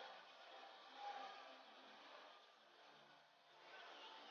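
Near silence: faint, even background ambience, with a slight brief swell about a second in.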